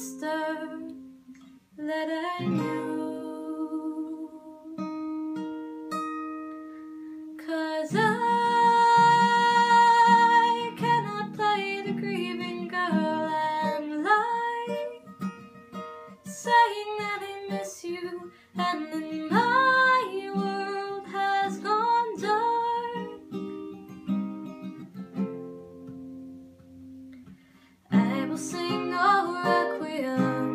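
A woman singing with her own acoustic guitar accompaniment. The guitar plays alone for a few seconds near the start and again for a stretch later on, before the voice comes back in loudly near the end.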